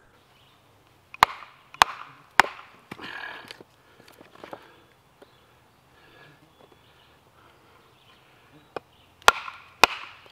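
Cold Steel Razor Tek fixed-blade knife chopping into the edge of a wooden board. Three sharp strikes come about half a second apart soon after the start, followed by a softer stretch of wood noise, then a quiet spell, and two more strikes near the end.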